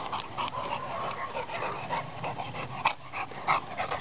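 An American Staffordshire terrier whimpering, heard as a run of short, irregular sounds.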